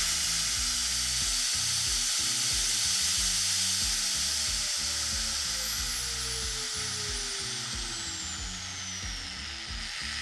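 Bosch GWS 9-125S 900 W angle grinder running free with no disc at its top speed setting, about 11,000 rpm, with a high whine. From about four seconds in, the whine falls steadily in pitch as the motor winds down.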